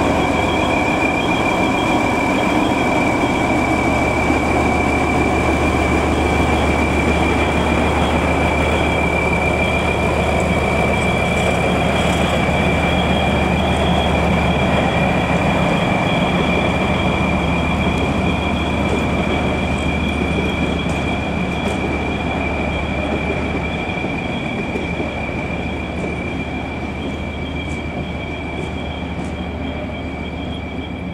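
Diesel shunting locomotive, the MÁV M44 'Bobó' type, running as it rolls slowly away along the yard tracks: a steady low engine hum and wheel-and-rail rumble, fading gradually over the last several seconds, with a constant high whine over it.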